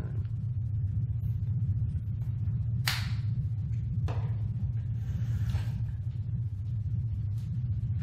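Toothpaste tube and toothbrush being handled at a bathroom sink: a sharp click about three seconds in and another a second later, then a brief scrape, over a steady low hum.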